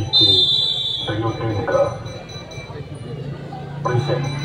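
Referee's whistle blown once, a single high blast of about a second near the start, over crowd voices.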